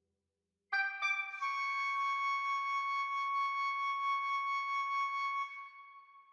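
A single high, flute-like wind-instrument note, entering suddenly just under a second in after a brief lower note, held steady for about four seconds and then fading away.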